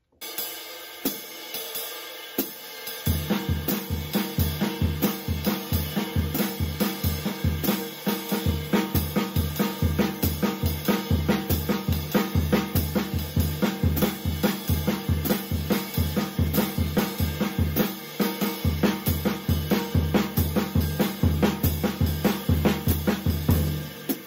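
Drum kit playing a jazz swing exercise: the ride cymbal keeps the tripletized spang-a-lang swing rhythm with the hi-hat on two and four, while snare and bass drum play alternating crotchet triplets, flipped now and then by a double on the snare or the bass drum. The cymbal plays alone for about the first three seconds before the snare and bass drum come in, and the playing stops right at the end.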